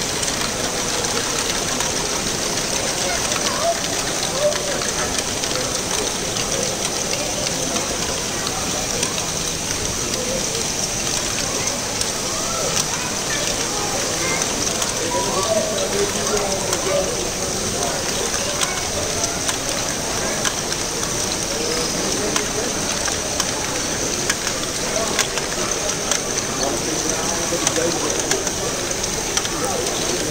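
Continuous rattling clatter of many small plastic balls running through LEGO Great Ball Contraption modules, with small clicks from their geared mechanisms. Voices of a crowd chatter underneath.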